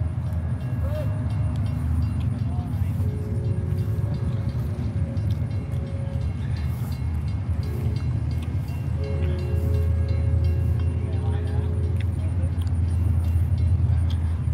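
A steady low rumble of outdoor background noise, with faint distant voices. Twice, a few steady held tones sound for about three seconds each.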